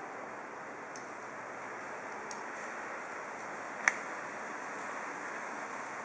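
Steady background hiss, with one sharp click a little before four seconds in and a few fainter ticks.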